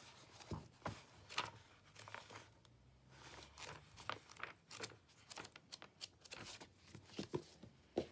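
Pages of an old paperback book being turned and handled: a run of faint, irregular paper rustles and crinkles with light taps.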